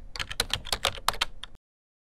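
Computer keyboard typing sound effect: a quick, even run of key clicks, about seven a second, that stops about one and a half seconds in.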